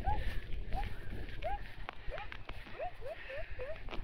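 A young child's voice making short rising little sounds, about ten in a row at roughly three a second, over a low rumble of wind on the microphone.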